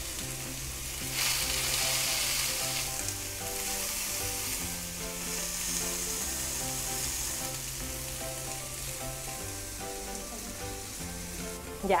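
Marinated pork skewers sizzling on a hot ridged grill pan, a steady frying hiss that swells about a second in. Soft background music with slow sustained notes runs underneath.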